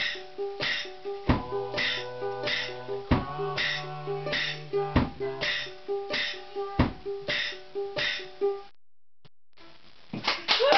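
Small-bodied string instrument strummed with a pick in a steady rhythm, about two strokes a second, with a repeating higher note over it and a low held note joining for a few seconds in the middle. The music stops abruptly near the end, leaving it almost quiet.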